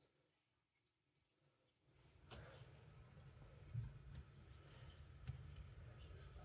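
Near silence: dead quiet at first, then faint low room noise from about two seconds in, with a few soft clicks or knocks.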